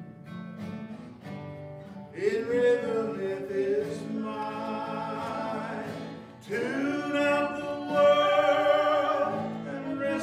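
A woman singing a slow song to acoustic guitar accompaniment, in two long phrases of held notes entering about two seconds in and again about six and a half seconds in.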